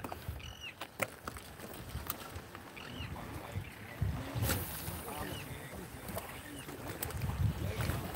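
Shoreline ambience of water and light wind noise, with faint distant voices or calls and a few sharp handling clicks.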